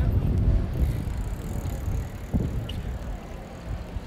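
A bicycle rolling past close by on stone paving, over a low rumble, with a single thump a little past two seconds in.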